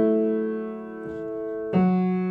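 Yamaha upright piano playing a slow left-hand ostinato on a D-over-F-sharp chord shape (F-sharp, A and E). Notes are struck at the start, softly about a second in and again near the end, each left to ring and fade.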